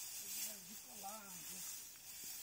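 A low, wavering voice without words, sliding up briefly about halfway through, over a high hiss.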